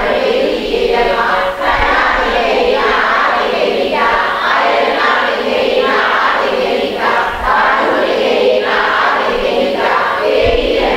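A group of voices chanting a Buddhist text together in unison, in a steady rhythm of phrases about a second long.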